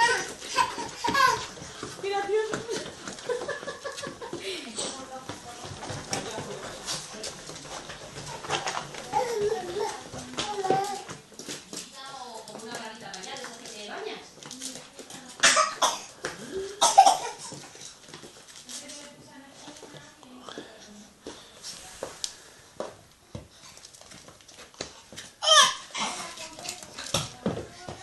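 A baby babbling and laughing, mixed with adults' quiet talk and laughter, with a few short loud bursts about halfway through and again near the end.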